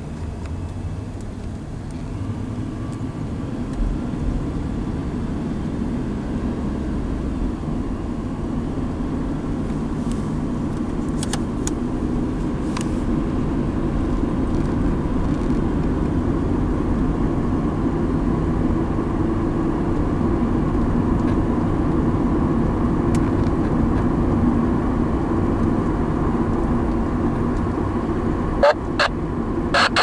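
Westbound St. Lawrence & Atlantic freight train rolling by, a steady low rumble that slowly grows louder. Several sharp short clicks near the end.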